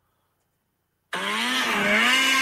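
After about a second of dead silence, an engine sound cuts in suddenly, rises in pitch briefly, then runs at a steady high speed.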